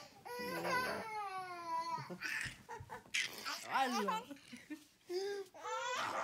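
A baby's high-pitched crying and babbling: drawn-out whiny cries, the first lasting over a second, then shorter calls.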